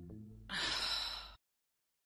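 A single breathy sigh, under a second long, about half a second in.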